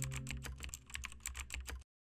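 Rapid keyboard-typing sound effect, about ten clicks a second, over the fading tail of a held music chord. It cuts off abruptly just before the end.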